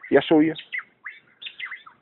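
A bird chirping in short, quick notes that glide up and down, following a brief word from a man's voice at the start.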